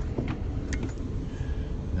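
Steady low rumble of a tour bus on the move, heard from inside the cabin, with a few light clicks a little before the middle.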